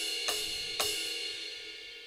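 Ride cymbal sample of a KAT KT-200 electronic drum kit's Funk preset, struck twice about half a second apart, with lots of ring that slowly fades away.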